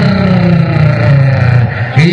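A man's long drawn-out vocal call, held for about two seconds, with its pitch sliding slowly down.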